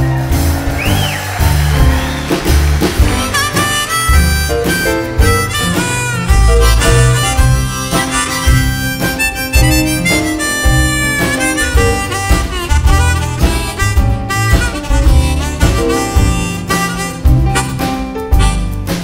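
Harmonica solo, played in a neck rack, over strummed acoustic guitar with upright bass and drums keeping the beat.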